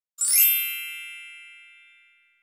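A single bright chime struck once about a quarter second in, ringing with several high tones that fade away slowly over about two seconds: an intro logo sound effect.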